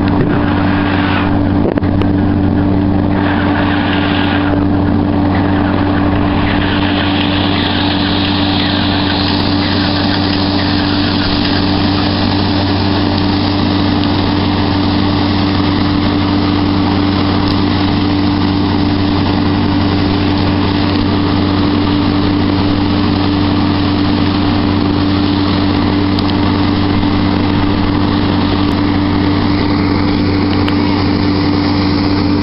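Beech 18's radial aircraft engine running steadily on the ground, one engine turning its propeller after starting, a constant loud drone with no change in level.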